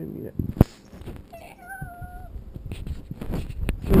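A cat meows once, a level call lasting about a second. A sharp knock comes just before it, and low bumps and rustling from the camera being handled come near the end.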